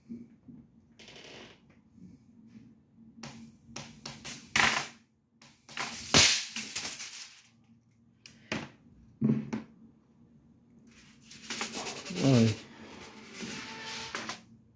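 High-voltage arcs from a 200 kV voltage multiplier snapping in irregular bursts over a faint steady low hum. The sparks jump where the loose high-voltage wires are not tight.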